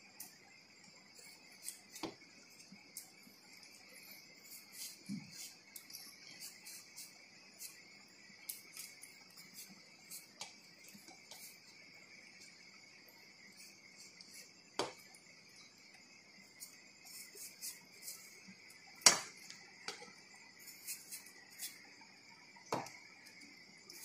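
A knife clicking and scraping against a stainless steel plate as watermelon rind is cut away, in scattered light ticks with one sharp clink in the last third. Steady high insect chirring runs underneath.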